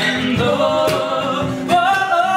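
Live acoustic band: a male voice sings one long held note that steps up in pitch near the end, over strummed acoustic guitars and steady cajón beats with cymbal strokes.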